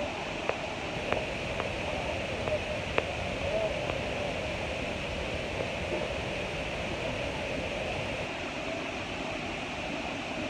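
Steady rushing hiss of an airliner cabin's air system, with a few faint clicks in the first three seconds and faint distant voices.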